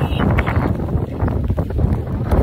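Wind buffeting the phone's microphone: a steady, loud low rumble.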